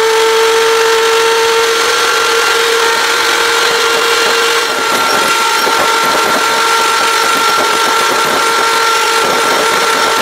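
Breville 320-watt electric hand mixer running at a steady speed, its beaters whipping an egg white toward soft peaks: a constant motor whine with a brief dip in level about halfway through.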